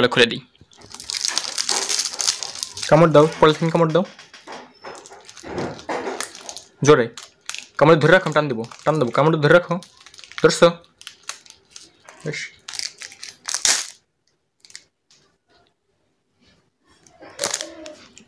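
Clear plastic lollipop wrapper crinkling as it is handled and pulled off, in a long crackly stretch about a second in and a shorter one near the middle. Short bursts of voice come in between.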